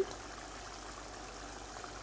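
Kofta curry sauce bubbling steadily at a simmer in a frying pan: a low, even hiss with faint small pops.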